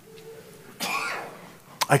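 A single short cough, about a second in, followed by a man starting to speak.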